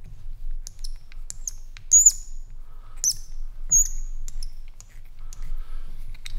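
A 220BX lantern valve stem being turned through freshly packed graphite rope, squeaking briefly and high-pitched three times, about two, three and nearly four seconds in, amid light clicks of the tool. The squeak is put down to excess packing putting undue pressure on a steel part of the valve.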